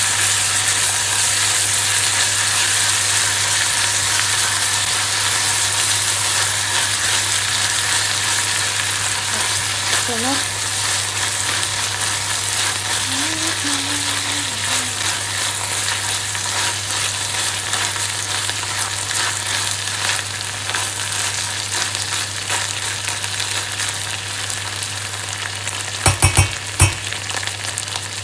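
Small dried fish (omena) and onions sizzling as they fry in a stainless steel saucepan while being stirred with a silicone spatula; the sizzle slowly dies down. A few sharp knocks near the end.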